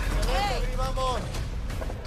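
A voice over background music with a steady low bass.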